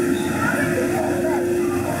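Indistinct chatter of other people in a large hall, over a steady hum.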